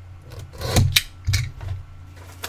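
Hands handling cardboard trading-card boxes: a few short scrapes and knocks, the loudest just before a second in, over a steady low hum.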